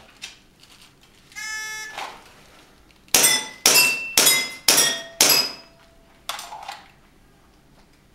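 A shot timer gives one start beep, and about a second later an airsoft pistol fires five quick shots about half a second apart, then a sixth about a second after. Several of the shots leave a short ringing tone behind them.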